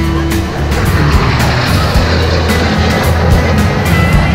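Music with a steady beat, with the broad rushing noise of a military jet flying past swelling through the middle.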